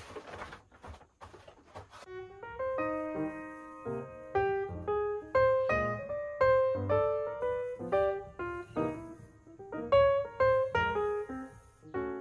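Background music: a piano melody of struck notes and chords that ring and fade, coming in about two seconds in.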